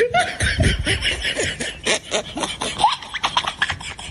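Laughter, a run of short repeated bursts with a few brief rising squeals.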